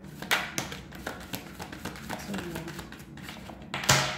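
A tarot deck being shuffled and handled, giving a run of quick papery clicks and taps of card on card, with a sharper tap just before the end.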